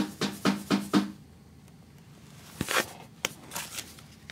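Hand tapping on a plastic embossing folder on a wooden table: about five quick, hollow taps in the first second. Then, near the end, a short scrape and a few light clicks as the folder is picked up and moved.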